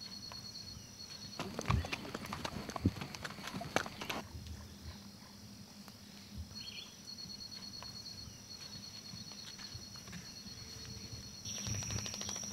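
Horses walking on a dirt track, scattered hoof clops that are thickest in the first few seconds. A faint, high, pulsing insect chirp comes and goes behind them.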